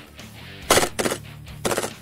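Three short full-auto bursts from a gas blowback airsoft submachine gun (KWA MP7). The first comes about two-thirds of a second in, a second follows right after, and the last is near the end.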